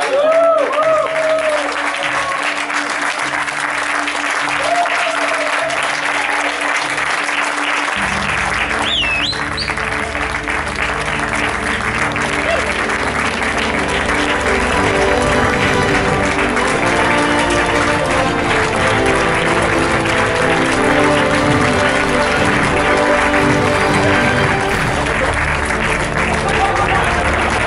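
A crowd clapping, with laughter at the very start. Background music grows louder from about eight seconds in.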